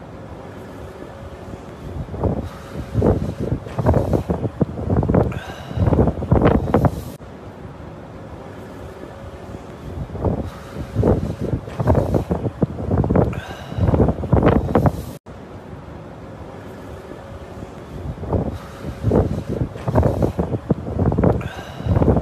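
Wind buffeting a phone microphone in loud, rough gusts over a steady low background rumble. The same stretch of about eight seconds repeats three times.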